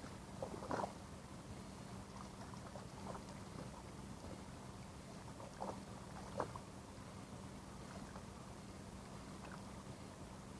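A hooked trout splashing at the water's surface as it is played in close to shore: a short flurry of splashes about a second in, and two more sharp splashes around five and a half to six and a half seconds in. A steady low hum runs underneath.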